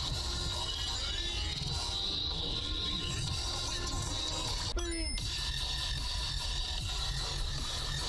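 Steady road and engine noise inside the cabin of a moving car, with faint music mixed in.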